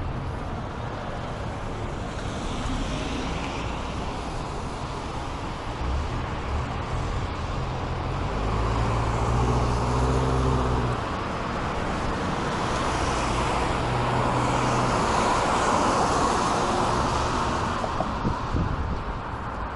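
Steady road noise of a car driving on an expressway: tyre and engine rumble with broad swells of rushing noise that come and go. A deeper droning hum stands out for a couple of seconds about halfway through.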